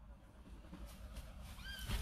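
Faint low rumble of background noise inside a car, with one short, faint high-pitched chirp near the end.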